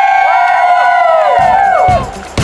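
A group of rafters, children and adults, cheering together in one long, loud, held shout that breaks off near the end.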